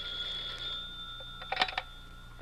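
Telephone bell ringing as a radio-drama sound effect, the ring dying away, then a short clatter about one and a half seconds in as the receiver is lifted.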